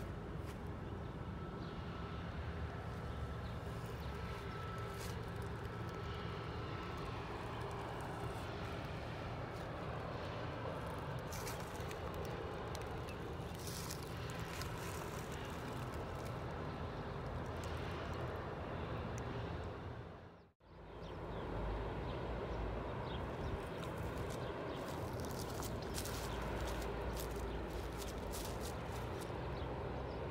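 Steady outdoor background noise with a low rumble and faint scattered ticks, briefly cutting out about twenty seconds in.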